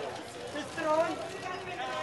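People's voices talking over each other, with no clear words.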